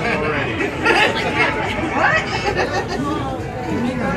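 A group of people talking over one another around a table, with one high voice rising sharply about two seconds in.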